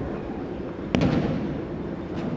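A single sharp slap on the mat about a second in, from the thrown partner's hand or body striking the tatami, with the large hall's echo ringing after it.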